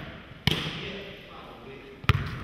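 A basketball bouncing once on a hardwood gym floor about half a second in, the hit echoing in the large hall.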